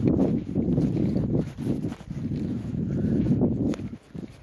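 Footsteps and handling noise as someone walks over dry, stony ground with rough grass: an uneven, low rustling and crunching with a few sharper clicks.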